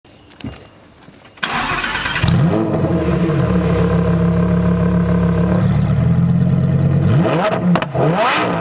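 2020 Lamborghini Huracán EVO's 5.2-litre naturally aspirated V10 starting up about a second and a half in, the revs flaring up briefly before settling into a steady idle. Near the end it is revved, the pitch rising quickly.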